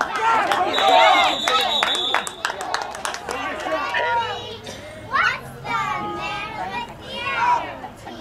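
Children's voices shouting and calling out across a sports field, with other voices mixed in. A steady high whistle tone sounds about a second in and lasts about two seconds.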